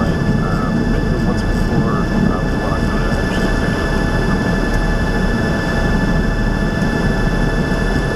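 Cockpit noise of a single-engine light aircraft on its landing rollout: the engine at idle with a steady low drone and a thin steady whine above it.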